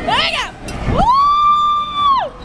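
A rider's high-pitched screams on a spinning teacup ride: a short squeal that rises and falls, then about a second in a long held scream that slides down at the end.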